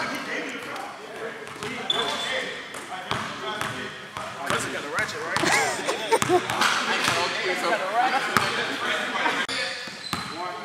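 A basketball bouncing on a gym court amid several people talking at once, with sharp knocks from the ball scattered through the chatter.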